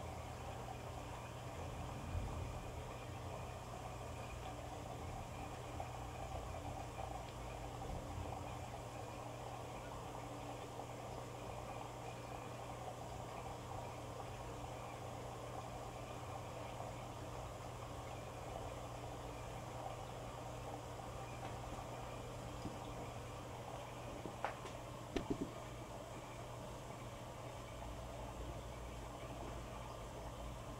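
Electrolux EFLS517SIW front-load washer at the start of a wash cycle: water running in and the drum turning the load over, over a steady low hum. A few sharp clicks come about three-quarters of the way through.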